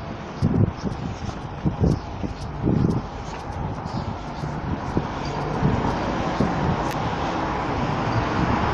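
Outdoor city street ambience: a steady hum of traffic that slowly swells in the second half, with a few dull low thumps in the first few seconds.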